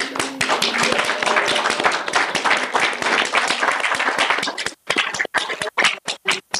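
Audience applauding: a dense round of clapping that thins out to a few scattered claps after about five seconds.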